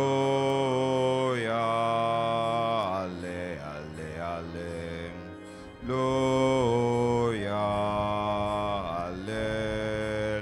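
Slow church music of long held chords. It swells in at the start, eases off around three seconds in and swells again about six seconds in.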